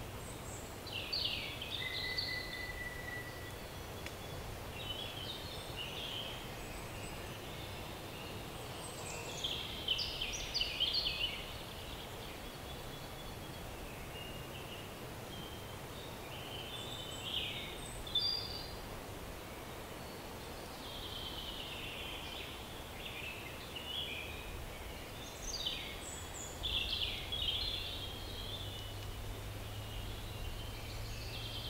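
Forest songbirds singing, bursts of chirps and trills every few seconds, with one short steady whistle about two seconds in, over a faint steady background hiss.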